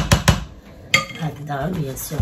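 Quick knocks of a spatula tapped against a baking pan: three close together at the start, then one more knock about a second in. A woman's voice comes in near the end.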